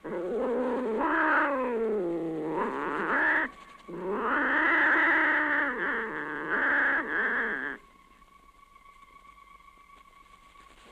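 Two long, drawn-out cat-like yowls, a caterwaul. The first falls steadily in pitch, and after a short break the second swells and sinks again before cutting off about three quarters of the way through.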